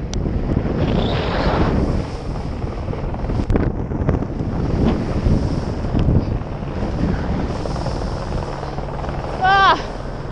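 Wind rushing over a body-worn action camera's microphone, together with a snowboard scraping and chattering over hard, chunky snow at speed. About nine and a half seconds in there is a short rising cry from the rider.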